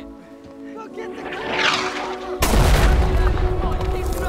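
A rushing hiss swells, then a heavy artillery shell explosion hits about two and a half seconds in, loud and deep, under sustained film-score music.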